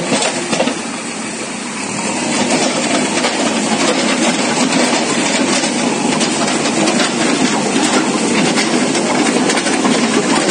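JCB backhoe loader's diesel engine running with a dense, steady noise. It grows louder about two seconds in and then holds steady as the loader's arm swings in.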